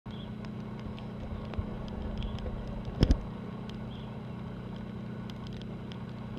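Steady low hum of a large ship's engines, with two quick knocks close together about halfway through.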